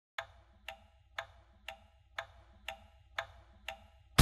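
Steady clock-like ticking, two sharp ticks a second, eight in all, over a faint low hum.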